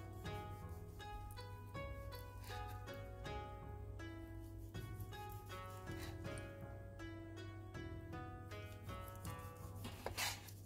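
Quiet background music of plucked-string notes, several notes a second.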